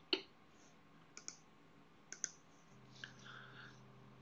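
A few faint computer mouse clicks, two quick pairs about a second apart, with a faint low hum coming in during the last second.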